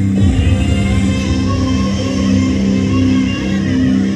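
Loud music, continuous and steady.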